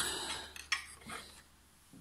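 A sharp click and a fainter one as a screwdriver and metal parts are handled and set down on the turbine frame.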